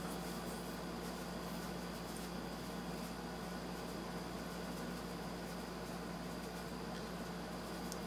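Steady low hum and faint hiss of a running desktop computer in a quiet room, unchanging while it boots.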